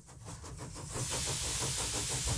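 Steam hiss sound effect, swelling up over about the first second and then holding steady, over a fast, even low pulse.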